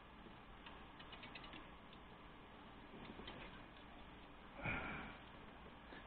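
Faint handling noise: small clicks and knocks of a microscope stand with gooseneck lights being moved across a silicone bench mat, with one brief, louder rustle about four and a half seconds in.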